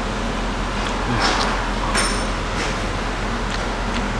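A metal spoon clinks once against a ceramic dinner plate about two seconds in, with a short scrape just before it, over the steady whir of a kitchen fan.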